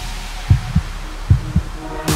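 Stripped-down break in a hardstyle track: four electronic kick drum hits in two close pairs, each a short thump falling in pitch, over faint sustained synth tones.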